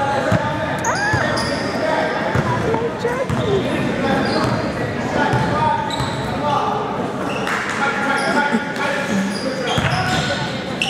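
Basketball game on an indoor court: the ball bouncing, sneakers squeaking on the floor in short high squeals, and players and spectators calling out, all echoing in the gym.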